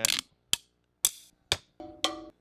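A wooden drumstick hitting hard objects such as rock and a metal frame: about four sharp, separate strikes roughly half a second apart, each with a short ringing tail.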